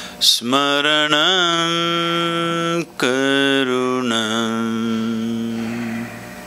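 A man chanting solo: a quick breath in, then a long held note with a brief waver in pitch, a short break near the middle, and a second long note that steps down in pitch and is held.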